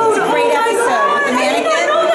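Several people talking at once, overlapping conversational chatter.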